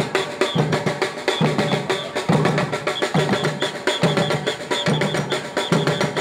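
Samba batucada drum ensemble playing: surdo bass drums strike a steady low pulse a little faster than once a second under fast, dense strokes on smaller drums, with a high accent cutting through at regular points.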